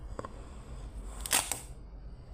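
Paper pages of a book being handled and turned by hand: a light tap early, then a short, loud paper swish about a second and a half in.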